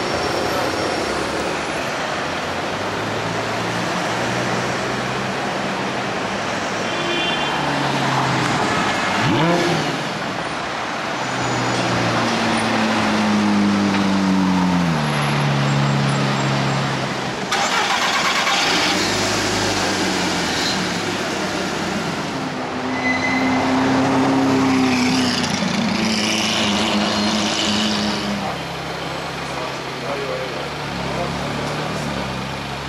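Supercar engines in city street traffic, their exhaust notes rising and falling several times as cars move off, over steady traffic noise.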